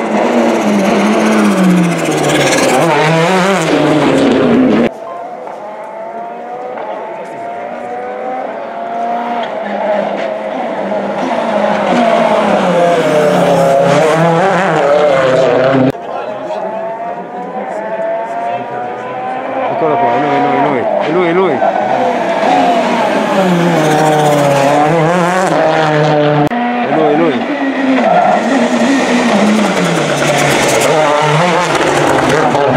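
Turbocharged four-cylinder World Rally Car engines driven hard at stage speed, one car after another. The engine note sweeps up and down repeatedly as they rev and change gear. The sound cuts abruptly twice, about five seconds in and again around the middle.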